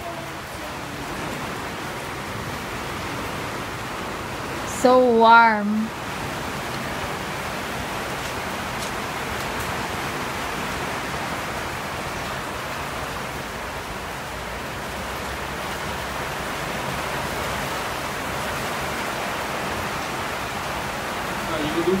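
Steady rain falling, an even hiss throughout. About five seconds in, a short wavering call from a person's voice rises over it.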